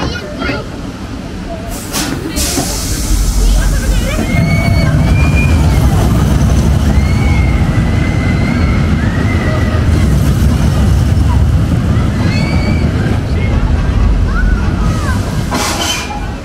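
Family roller coaster train rumbling along its steel track, a low steady rumble that builds a few seconds in and holds, with voices over it.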